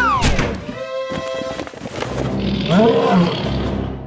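Cartoon background music with comic sound effects. It opens with a quick falling whistle-like glide, and a rising-and-falling warble comes near the middle.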